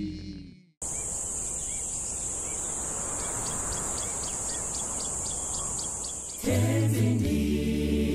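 A choir's singing dies away, and after a moment of silence comes rural outdoor ambience dominated by insects droning at a steady high pitch. About six and a half seconds in, an a cappella choir starts a new hymn, with low voices, louder than the ambience.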